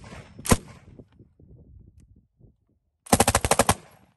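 ZB-30 light machine gun firing: a single shot about half a second in, then a short rapid burst of about eight rounds near the end.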